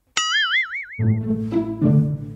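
A comic sound effect: a sudden twanging 'boing' whose pitch wobbles fast up and down, dying away after about a second. Then low brass and bass notes of comedic background music come in.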